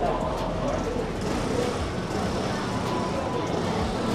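Busy street ambience: a steady background hum with the faint voices of passers-by.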